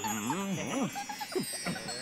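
Wordless, playful voice sounds, sliding hums and little giggly calls that glide up and down in pitch, over a steady twinkling chime-like tinkle.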